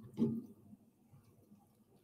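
A red silicone spoon scooping a wet bean, corn and salsa mixture out of a glass bowl: one short knock and scrape about a quarter second in, then only faint small handling sounds.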